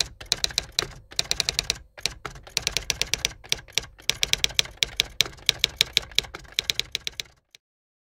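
Typewriter typing sound effect: rapid key clicks in short runs with brief gaps. They stop shortly before the end.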